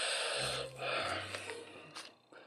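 A man's breathy, stifled laugh: two hard exhales through the nose, fading out.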